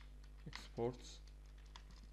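Computer keyboard being typed on, a few separate keystrokes as code is entered, over a steady low electrical hum.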